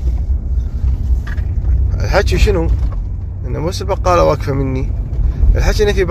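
Low, steady engine and road rumble inside a moving car's cabin, with a voice speaking in short phrases over it about two seconds in and again near the end.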